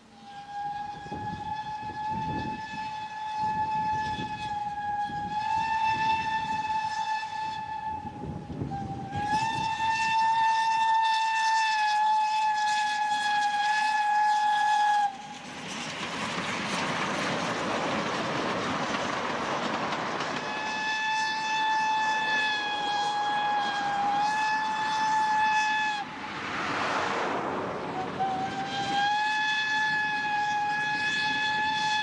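Narrow-gauge steam locomotive whistle sounding several long, steady blasts of a few seconds each, over the rhythmic exhaust beats of the working engine. Around the middle the whistle stops and the rumble and wheel clatter of the coaches passing close takes over.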